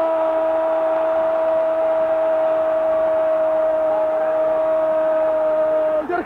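Argentine football commentator's drawn-out goal cry, a single shouted "gooool" held on one steady pitch, marking a goal just scored.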